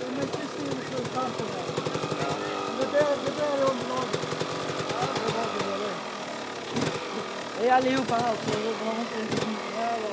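Enduro motorcycle engine running and revving under load as it struggles in deep mud, with spectators' voices shouting over it. The engine and voices ease off around the middle and pick up again near the end.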